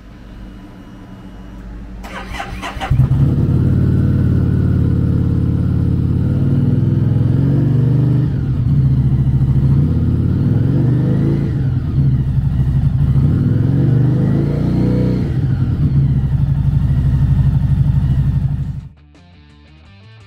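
Harley-Davidson Street 500's 491cc V-twin with a Vance & Hines slip-on muffler: the starter cranks about two seconds in, the engine catches and idles, and it is revved three times. It shuts off suddenly shortly before the end.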